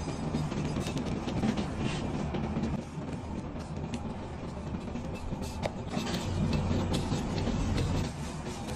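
Background music with a heavy low end.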